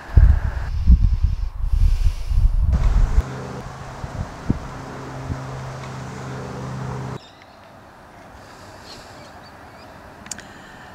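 Wind buffeting the microphone as a loud, uneven low rumble for about the first three seconds. A steady low hum follows and cuts off abruptly about seven seconds in, leaving faint outdoor background.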